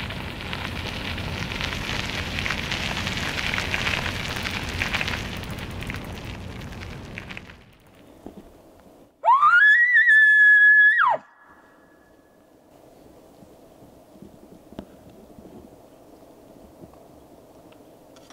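Elk bugle call blown through a hunter's bugle tube: one call that rises quickly to a high whistle, holds it for about a second and a half, then cuts off, leaving a faint echo. Before it there is a steady rushing noise for the first several seconds.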